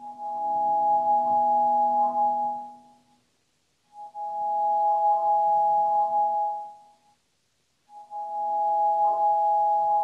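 Grand piano sounding the same held chord three times, each chord ringing for about three seconds with a brief silence between, heard through a Zoom call's audio.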